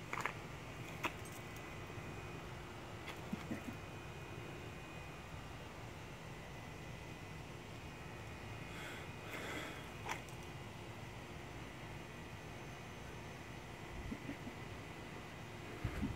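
Faint steady low hum of a quiet room, broken by a few faint clicks and a brief soft rustle about nine seconds in, from handling and swinging a pair of LED poi.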